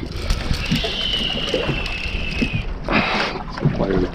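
Wind and sea noise on an open boat, a steady low rush. About a second in, a thin high whine starts and falls slightly in pitch over about two seconds. A short rush of noise follows near the end.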